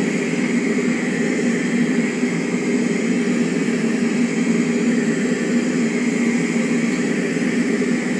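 Steady mechanical drone: an even hiss with a low hum underneath, unchanging throughout.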